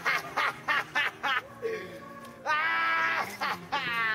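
Young people laughing and yelling: a run of short laughs, then a long drawn-out cry about two and a half seconds in, and another that rises in pitch near the end.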